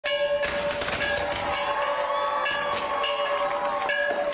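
Large hanging bell being rung repeatedly. It sounds one steady main note with higher overtones, renewed by fresh strikes several times.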